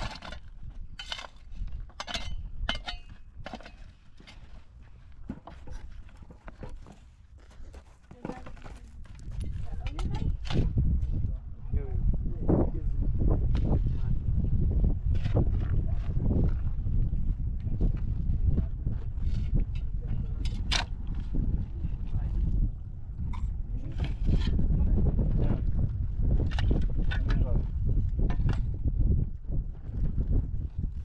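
Metal shovel blade striking and scraping hard, stony soil while digging a post hole, a quick run of sharp strikes in the first few seconds and scattered ones later. Voices talk over it, and from about a third of the way in a low wind rumble on the microphone grows louder.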